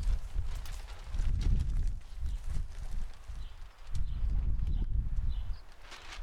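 Footsteps on wood-chip mulch, with irregular low thumps and light clicks as the camera is carried along.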